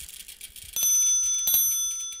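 A small bell struck twice, about three-quarters of a second apart, each note ringing on with bright overtones, with light ticking around them: the sound logo that closes the podcast's audio ident.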